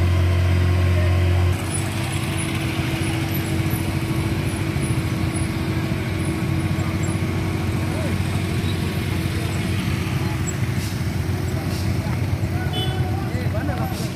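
A truck's engine idling close by, with voices over it, cut off suddenly about a second and a half in. After the cut comes a steady mix of motorcycle engines and people talking by the road.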